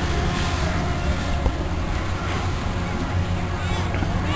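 Steady low rumble of wind on the microphone, with faint voices of people on the slope and a brief voice near the end.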